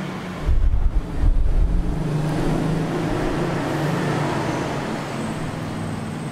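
A motor vehicle's engine running past: a deep rumble swells about half a second in, then a steady low engine drone with road noise holds through the rest.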